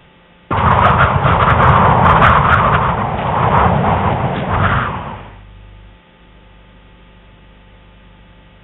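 Peugeot 206 GTi 180 hatchback's engine running loudly. It comes in suddenly about half a second in and dies away after about five seconds, leaving a faint low hum.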